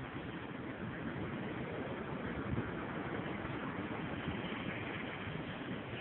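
Steady rushing noise of wind and sea, even throughout with no distinct events.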